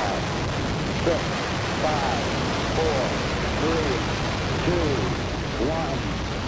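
Steady rushing roar of a Saturn V's first-stage F-1 engines after ignition, running under a launch countdown voice that calls out the final seconds about once a second.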